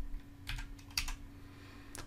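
Computer keyboard keystrokes, a handful of separate clicks spread over two seconds, over a faint steady hum.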